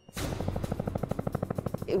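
Helicopter rotor chopping: a rapid, even beat of more than ten blade thuds a second that starts suddenly.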